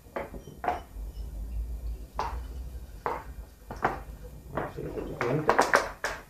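Vinegar poured from a large plastic bottle into a glass, with clinks and knocks of glass and bottle being handled, and a quick run of several knocks near the end.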